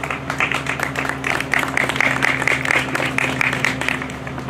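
Audience applauding: a dense, irregular patter of hand claps.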